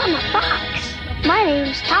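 A young character's high-pitched cartoon voice speaking, sweeping up and down, over background music.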